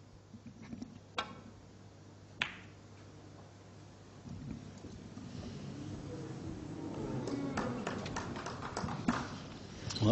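Snooker break-off: a click as the cue strikes the cue ball, then a louder, sharper click over a second later as the cue ball hits the pack of reds. From about four seconds in, a murmur from the audience rises as a red nearly goes in, with a few more ball clicks.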